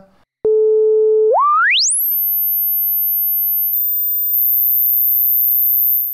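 Softube Model 82 SH-101 emulation's filter self-oscillating as a pure tone. After about a second on a low note, the cutoff is swept up to its maximum, rising quickly into a very high steady whistle that holds.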